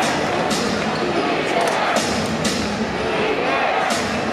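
Basketball dribbled on a hardwood arena court, a sharp knock roughly every second, over the steady murmur and chatter of the arena crowd.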